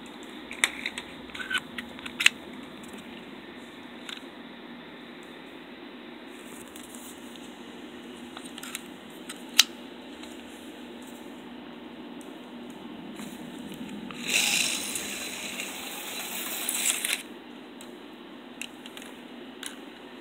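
Slot car running on a 1967 Revell Hi-Bank Raceway track: its small electric motor hums steadily, with scattered sharp clicks. A louder, hissier stretch of about three seconds comes roughly two-thirds of the way through.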